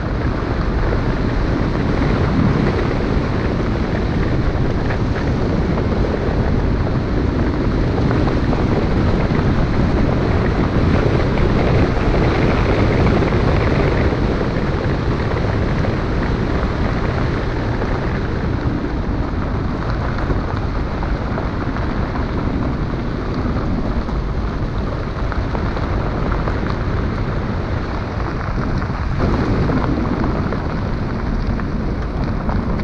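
Car driving along a gravel road: a steady rumble of tyres on loose gravel mixed with wind noise, which changes little throughout.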